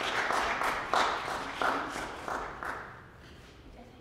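Audience clapping: a short round of applause that fades out about three seconds in.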